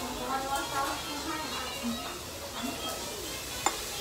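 Restaurant dining-room ambience: background voices of other diners at a steady moderate level. A single sharp click near the end.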